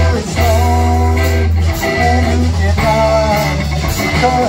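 A small rock band playing live: acoustic guitar strummed over electric bass and drums, with a strong, steady bass line.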